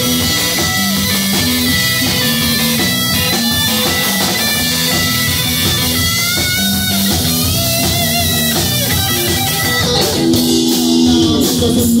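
Live rock band playing an instrumental passage: a Stratocaster-style electric guitar carries the lines over a drum kit, with some bent notes in the middle. The drums and cymbals grow louder near the end.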